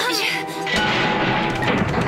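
Cartoon sound effect of a fishing boat's propeller fouling: a sudden low crash and rumble about three quarters of a second in, the sign that something has caught in the propeller and stalled the motor. Background music plays throughout.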